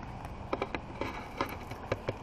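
Wood campfire burning in a fire ring, crackling with a few sharp, irregular pops over a steady low background noise.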